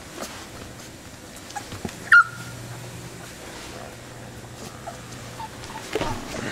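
A puppy gives one short, high yelp about two seconds in, sliding down in pitch, with a few faint whimpers later, over a steady low hum.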